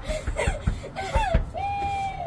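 Children's voices calling out in short, unclear sounds, one of them held near the end, with a few low thumps.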